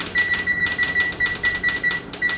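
Electronic oven control panel beeping in a fast, even run of short high beeps, about four or five a second, as the oven is set to 450 °F.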